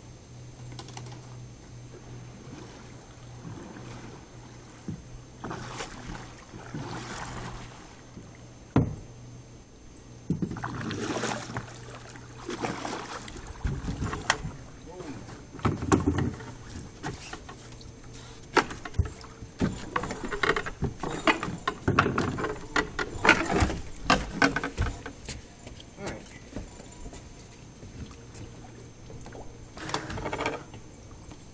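Canoe being paddled in and brought alongside a wooden dock: paddle strokes with a sharp knock about nine seconds in, then a long run of knocks and clatters against the hull in the second half as it comes in.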